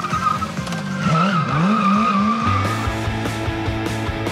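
Modified BMW S 1000 RR sportbike drifting, its inline-four engine revving up and down while the rear tyre squeals. About two and a half seconds in, music with a steady beat comes in and takes over.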